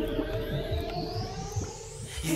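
Background music fading under a rising electronic sweep, a transition whoosh that climbs steadily in pitch.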